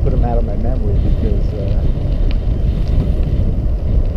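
Wind buffeting the microphone of a camera on a moving bicycle: a loud, steady low rumble, with a few words from the rider's voice in the first second.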